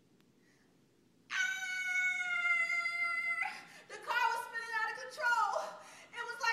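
A woman's wordless vocal sounds: after a second of quiet, one steady high note held for about two seconds and cut off, then wavering, sliding voice sounds.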